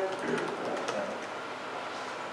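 Quiet meeting-room tone. A drawn-out voiced sound trails off at the start, a faint murmur follows, and there is a light click about a second in.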